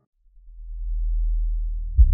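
Low sub-bass tone of a trap beat, one deep steady note that fades in out of a brief silence, swells over the first second and holds, ending as the full beat comes back in.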